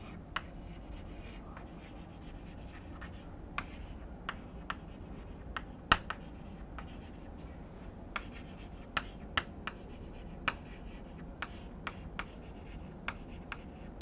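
Chalk writing on a blackboard: irregular short taps and scrapes as the letters are formed, over a faint room hiss.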